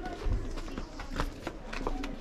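Scattered footsteps and a few sharp knocks as a group of people settles on steps, with faint voices behind.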